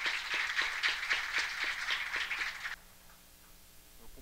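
Audience applauding in a hall, many hands clapping, cut off abruptly near the end.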